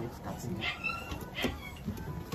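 Richardson's ground squirrel giving two short, high squeaks, a little under a second apart, while it is being handled.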